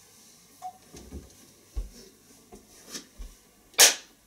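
One sharp, loud hand clap near the end, the sync mark struck in front of the interviewee as the cameras roll. Before it, a few soft low thumps and faint clicks of people moving about.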